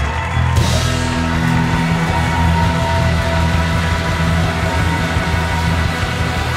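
Rock music with heavy, sustained low notes held throughout, and a brief bright crash about half a second in.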